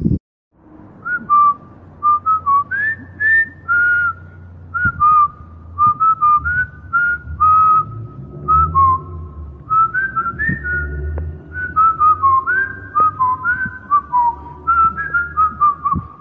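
A person whistling a tune: a quick run of short notes stepping up and down, starting about a second in, over a low rumble.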